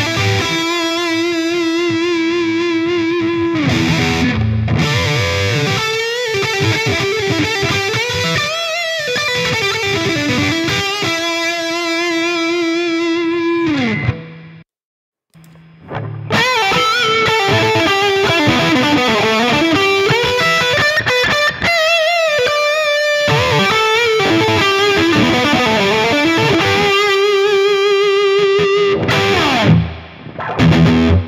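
Gibson Les Paul on its neck pickup, played through AmpliTube's high-gain Metal Lead V amp simulation: distorted lead lines with long wavering held notes. The phrase stops about halfway through for a second or so, then is played again through the other AmpliTube version for comparison.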